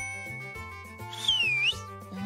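Cartoon background music with a steady beat, and a high held tone from the start. A little over a second in, a loud whistle-like sound effect swoops down and back up.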